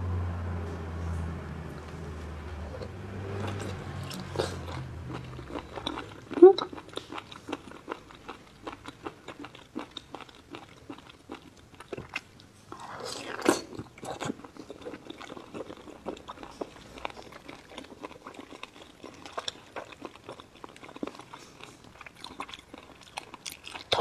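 Close-up chewing and biting of raw whole baby squid sashimi, a run of many small wet mouth clicks with a louder bite about halfway through. A low hum is heard in the first five seconds.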